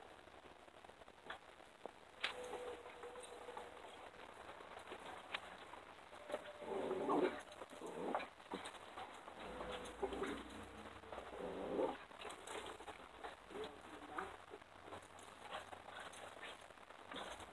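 Faint wild turkey calls: a few short calls and a couple of held notes, the loudest about seven and twelve seconds in, with scattered light clicks.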